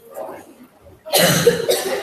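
A person coughing close to the microphone: a loud, sudden cough about a second in, in two bursts.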